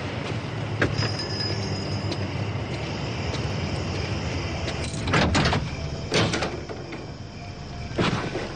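A car door being opened and shut as someone gets into a car: two loud sounds about a second apart past the middle, over a steady low hum.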